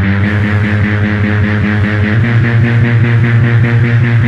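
Industrial power-electronics music made with analog electronics: a loud, low drone with stacked overtones that shifts pitch about halfway through, under a fast, even pulsing buzz higher up.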